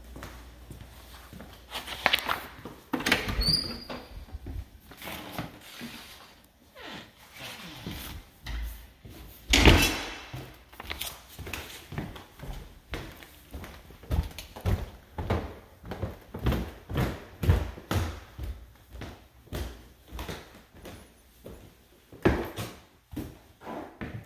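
Footsteps on hardwood floors and wooden stairs, an even tread of about two steps a second, with a few louder knocks, the loudest about ten seconds in.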